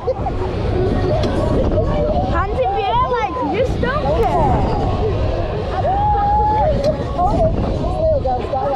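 Riders' voices shouting and whooping over a heavy rumble of wind buffeting the microphone on a fast-moving fairground ride, with one long held shout a little past the middle.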